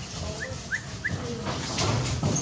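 Three short, high, rising squeaks from a small animal, about a third of a second apart.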